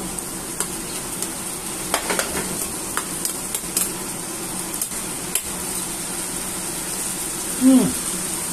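Chicken binagoongan sizzling in a steel pan over a gas flame while metal utensils stir it, knocking and scraping against the pan a few times. Near the end the cook gives a short, falling "hmm" on tasting it.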